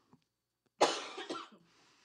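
A woman coughing into her arm: one sharp cough about a second in, followed by a smaller second cough and a faint breath out.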